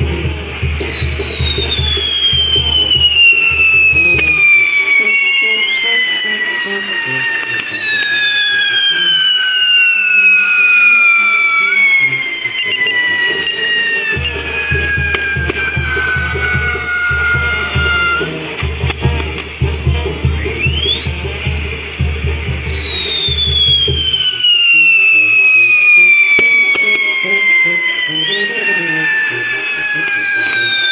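Pyrotechnic whistles burning on a fireworks tower: long shrill whistles that jump up quickly and then slide slowly down in pitch over several seconds, one after another and overlapping. A low pulsing beat sits beneath them for part of the time.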